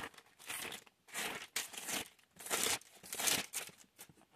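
Thin Bible pages being leafed through, a series of about six short paper rustles.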